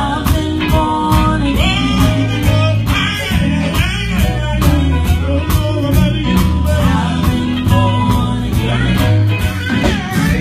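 Live gospel band performing: several vocalists singing into microphones over a drum kit and electric bass guitar, with a steady drum beat.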